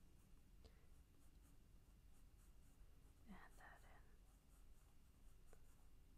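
Faint pencil strokes on paper, a quiet repeated scratching of sketching. A brief soft vocal sound comes a little past halfway.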